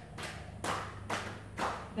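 Hands patting along the body in a rhythmic self-massage, slapping down the arm at about two pats a second.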